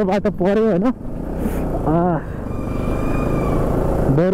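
Motorcycle running steadily under the rider, a low engine rumble mixed with road and wind noise from a bike-mounted camera.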